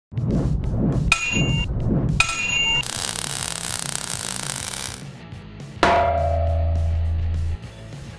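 Animated logo intro sting: electronic music with thumping beats and two metallic clangs, then a hissing whoosh, then one sudden deep hit that holds a low hum for under two seconds and cuts off.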